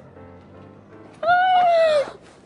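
A woman's long, excited squeal of greeting that starts about a second in and falls slightly in pitch as it is held.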